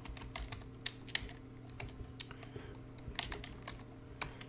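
Typing on a computer keyboard: a run of irregular, unevenly spaced keystroke clicks, with a faint steady hum underneath.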